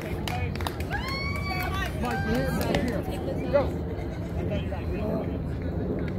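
Players and spectators calling out and chattering across an open softball field. There is one high, drawn-out shout about a second in and a single sharp knock about three and a half seconds in.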